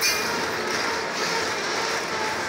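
Freight train's open-top hopper cars rolling past, their steel wheels running on the rails in a steady rumble, with a faint steady wheel squeal.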